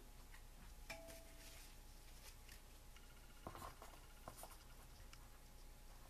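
Near silence: faint handling of paper and double-sided score tape on a craft table, with a small click about a second in and a few soft scuffs a little after the middle.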